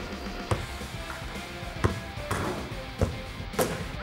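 Background music, with a few sharp, irregular thumps as a soccer ball is kicked at goal in a penalty kick.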